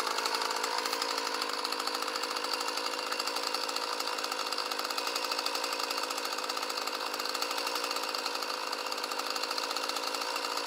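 Two-stroke chainsaw idling steadily, not yet cutting.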